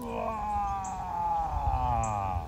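A man's long voiced exhale, a drawn-out sigh that slowly falls in pitch over about two and a half seconds, breathing out as he releases a stretch.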